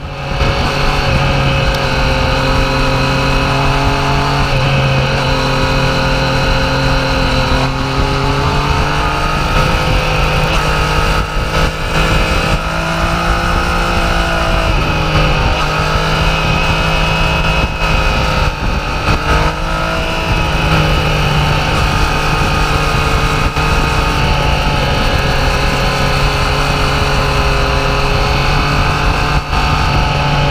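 Motorcycle engine running at road speed through a series of curves, heard from a camera on the rider, with wind rushing past. The engine note rises and falls gently with the throttle and drops out briefly a few times in the middle as the throttle is rolled off.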